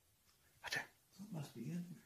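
A short breathy hiss, then a faint, brief, indistinct voice with no clear words.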